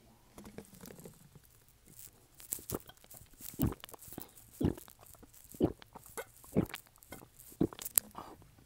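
A person chewing crunchy food close to the microphone, one crunch about every second.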